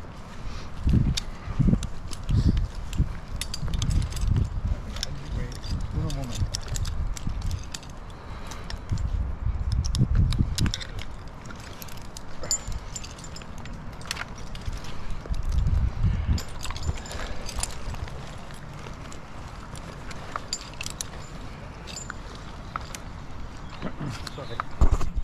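A climber's rope and climbing hardware being handled, with repeated low thuds of handling noise on a body-worn camera and many short sharp clicks and clinks of metal gear.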